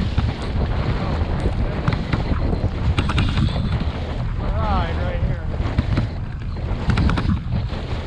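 Strong wind buffeting the microphone in a heavy low rumble, with choppy waves slapping and splashing against a kayak's hull as it pushes head-on into whitecaps. There are sharper splashes about three seconds in and again near the end.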